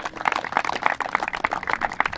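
A small group of people applauding, many hands clapping in a dense, uneven patter.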